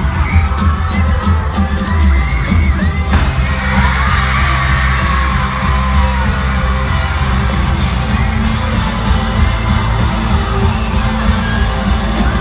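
A live pop-rock band playing loudly through an arena sound system, heard from within the crowd, with fans screaming over it. The sound fills out suddenly about three seconds in, as the full band comes in.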